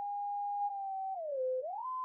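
Music: a single pure, theremin-like tone playing a slow melody, holding notes and sliding between them. It dips to a low note about a second and a half in, then glides up to a high note near the end.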